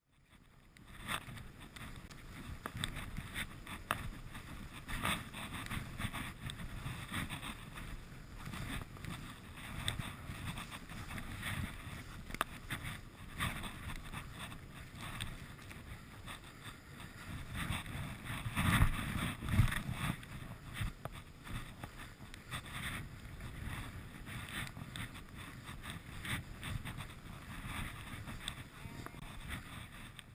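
Skis sliding and scraping through wet, heavy off-piste snow, with wind rushing over the microphone and frequent small knocks and clatters. The loudest stretch of scraping comes about two-thirds of the way through.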